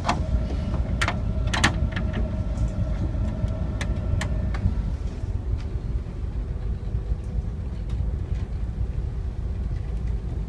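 A tugboat's diesel engine rumbling steadily while under way, with a few sharp clicks and knocks in the first half.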